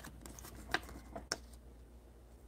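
A few faint, short ticks and rustles of a trading card and a thin plastic card sleeve being handled as the card is slipped into the sleeve. The loudest tick comes a little under a second in.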